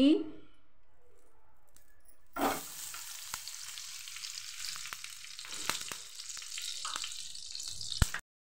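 Ghee dropped from a small metal bowl (katori) into a hot kadhai, landing about two and a half seconds in, then sizzling steadily as it melts in the hot pan, with a few light clicks.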